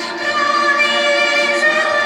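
A girl singing into a stage microphone over a musical accompaniment, holding long sustained notes.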